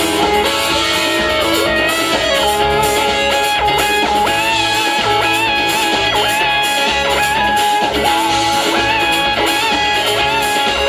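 A live band playing, with electric guitar to the fore over a steady bass and drum backing.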